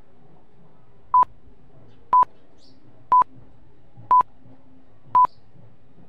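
Five short, identical electronic beeps at the same pitch, evenly spaced about one a second: a countdown timer sound effect.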